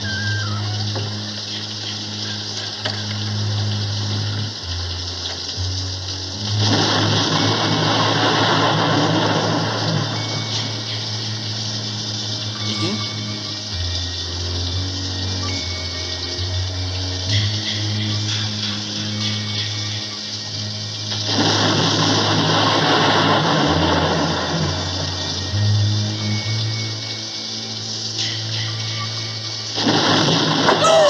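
Suspense film score of low sustained notes shifting pitch every few seconds, over a steady hiss of rain that twice swells into a louder rush of noise lasting a few seconds.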